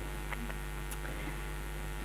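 Steady electrical mains hum on the sound system, with a couple of very faint ticks.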